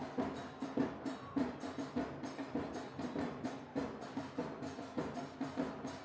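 Drums beating a steady rhythm, about two strokes a second.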